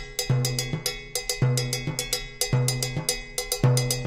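Background music with a steady beat: a deep bass note about once a second under quick, sharp percussion ticks.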